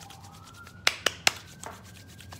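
Three quick, sharp clicks about a second in, like small hard objects tapping, as hands handle an oil bottle over a candle on a ceramic plate. A faint thin tone hums underneath, rising slightly.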